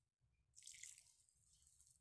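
Faint rustle of fingers rubbing crumbly wheat flour together in a glass bowl, mostly in one brief stretch about half a second in.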